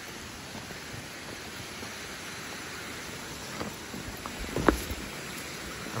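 Steady rushing hiss of flowing water from a nearby cascade or stream. A few light knocks come in the second half, with one sharp thump a little before the end.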